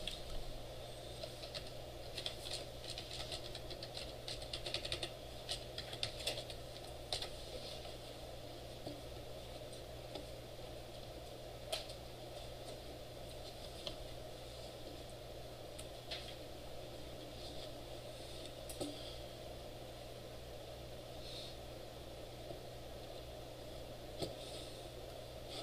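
Computer keyboard typing and clicks, quick and busy for the first several seconds, then only a few scattered clicks, over a steady low room hum.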